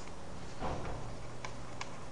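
A few sharp, light clicks of a stylus on a pen tablet, in the second half, over a steady low electrical hum, with a brief soft rustle just under a second in.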